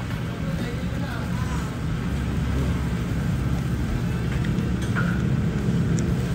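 A steady low background rumble with a faint hum, with faint voices now and then.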